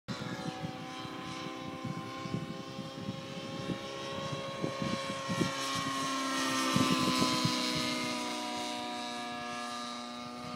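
Align T-Rex 700 radio-controlled helicopter flying overhead: a steady, high-pitched whine of rotor and drivetrain with several tones. It grows louder about seven seconds in, its pitch sinking slightly, then eases off a little.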